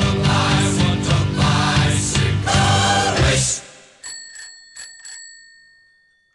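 Rock music with a beat ends a little past halfway. It is followed by a bicycle bell rung about four times in quick succession, each ring fading out.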